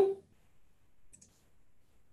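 A single faint computer-mouse click about a second in, advancing the presentation to the next slide; otherwise near silence.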